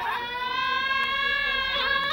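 A high singing voice in Amazigh izlan song holds one long note that rises slightly at the start, then breaks into a wavering vibrato near the end.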